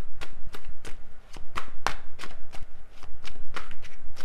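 A deck of tarot cards being shuffled by hand, a quick run of soft card slaps at about four a second.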